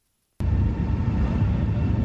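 Loud, steady low rumbling outdoor noise that starts abruptly about half a second in.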